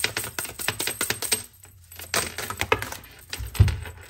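A deck of tarot cards being shuffled by hand: quick runs of card clicks, pausing about a second and a half in and starting again. Near the end there is a single dull thump.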